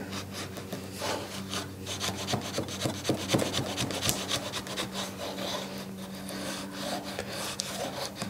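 A flush-trim blade scraping and slicing excess black polyamide knot filler off the face of a wooden board, in many short, quick strokes.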